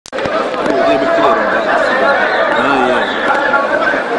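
Several people talking at once: a steady mix of overlapping voices.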